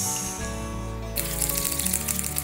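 Background music, with a soft wet crackling from about a second in as chopsticks stir coconut oil into beetroot juice in a wooden bowl.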